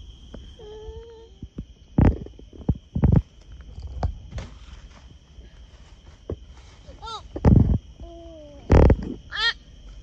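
Steady high-pitched chorus of night insects, broken by four loud thumps about two, three, seven and a half and nine seconds in.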